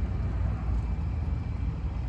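Low, steady outdoor background rumble that wavers slightly in level, with no distinct events.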